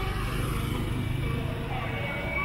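Street traffic at a city crossing: a steady low rumble of passing vehicles, heaviest in the first second and a half, with faint voices mixed in.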